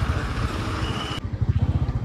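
Motorcycle engine running with a steady low pulsing beat, over street traffic noise; a little past halfway the higher traffic hiss drops away suddenly while the engine beat carries on.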